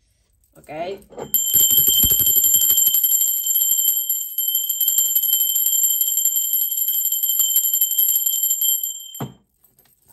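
Small brass handbell rung continuously with rapid clapper strikes, giving a steady high ringing that starts about a second in, lasts about eight seconds and stops suddenly near the end.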